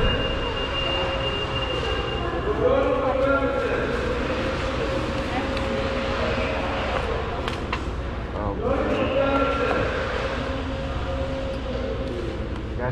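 Indistinct background voices in a large public hall, over a steady low rumble of room noise.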